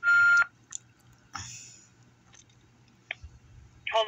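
A single loud electronic telephone beep, a steady tone lasting about half a second at the very start, heard on a phone call placed on hold. About a second and a half in there is a brief soft rustle, followed by a few faint clicks.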